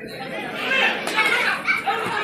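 Several people's voices talking and calling out together, getting louder about half a second in.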